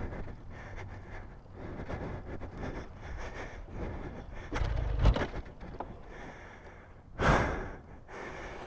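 A man sighing and breathing hard in frustration over steady wind and handling noise. There is a low thump about five seconds in and a louder rush of noise near the end.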